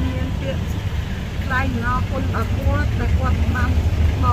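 A steady low engine rumble, as of a vehicle idling, with a woman talking over it.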